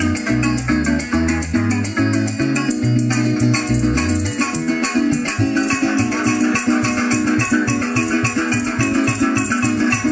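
Llanera (joropo) ensemble playing an instrumental passage: llanero harp melody over cuatro strumming, electric bass and maracas, at a quick steady pulse. The bass holds long notes for the first few seconds, then switches to short, quick notes.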